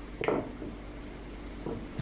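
Egg-coated King George whiting fillets being handled, with a brief soft wet sound a moment in and a fainter short one near the end, over a steady low hum.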